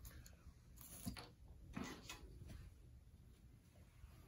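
Near silence, with a few faint taps and clicks from small objects being handled and set down on a worktable, about one and two seconds in.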